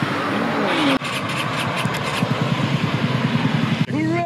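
Motor scooter engine running with a rapid, even firing pulse from about a second in, just restarted after breaking down and refusing to start.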